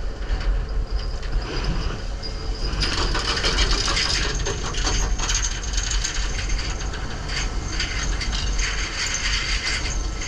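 Fishing boat deck gear running at sea: a steady low rumble under dense, fast rattling and clicking that grows busier about three seconds in.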